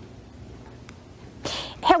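Faint room hiss, then a short, sharp in-breath about one and a half seconds in, just before a woman starts speaking.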